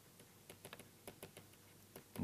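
Faint, irregular clicks and taps of a stylus on a pen tablet during handwriting.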